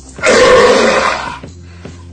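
A man's loud, open-mouthed vocal roar, a take-off of the MGM lion's roar, lasting about a second. It sounds over faint music.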